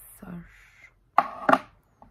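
Two sharp knocks, about a third of a second apart, as something hard is handled or set down close by.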